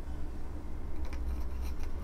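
Faint rubbing and a few light clicks about a second in, from a lightsaber's Delrin chassis and pommel being worked into the hilt by hand.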